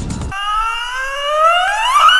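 A single rising electronic tone, a transition sound effect climbing steadily in pitch and faster near the end. It follows the abrupt cut-off of the intro jingle's tail about a third of a second in.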